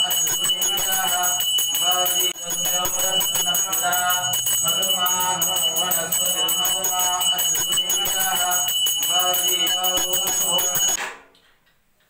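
A hand-held puja bell rung rapidly and continuously, its steady high ringing over a chanting voice. Both stop abruptly about a second before the end.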